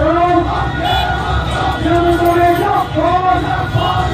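Voices singing a repeated chant in drawn-out notes, about one phrase a second, over a continuous low crowd din.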